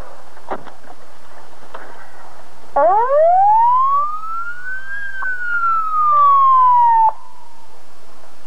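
Police patrol car siren sounding one long wail about three seconds in: it rises for about two seconds, falls slowly, and cuts off suddenly. A single click comes about half a second in.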